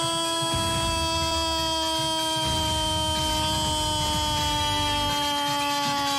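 A football commentator's long drawn-out goal cry, one held "gooool" on a single note that slowly sags in pitch, announcing a goal.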